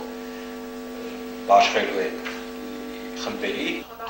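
Steady electrical mains hum: a buzz made of a stack of tones, unchanging throughout, with brief snatches of speech about one and a half seconds in and again near the end.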